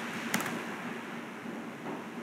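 Steady room noise, an even hiss with a faint low hum, and a single sharp click about a third of a second in.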